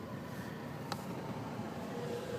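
Steady road and engine noise inside a moving car's cabin, with one short click about a second in.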